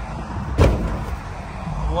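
Low, steady rumble of a vehicle heard from inside its cabin, with one sharp thump about half a second in.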